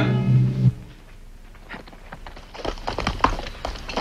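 A held chord of dramatic score music cuts off abruptly under a second in. After a quiet moment, irregular clops and knocks of horses' hooves shifting on dirt.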